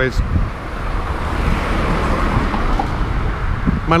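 A car passing along the street, its tyre and engine noise swelling to a peak about two seconds in and then easing off.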